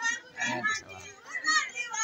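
Chatter of several high voices, children's among them, in a gathered crowd, coming in short bursts.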